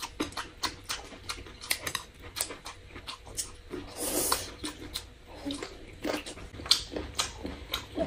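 Close-miked eating sounds: wet chewing and lip smacking with many short clicks, and a longer slurp about four seconds in.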